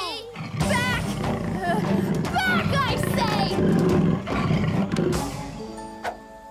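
Cartoon soundtrack: background music under high-pitched cartoon character voices giving wavering calls and exclamations without clear words, with a dense low rumble underneath; it gets quieter near the end.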